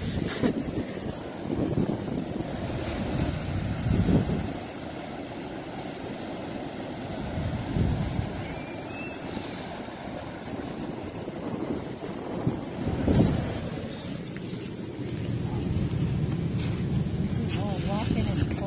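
Wind rumbling on the microphone in uneven gusts, with ocean surf washing in the background.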